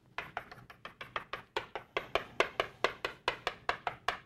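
Chalk tapping and striking a blackboard in quick short strokes while plus signs are marked inside a drawn circle, about five sharp clicks a second.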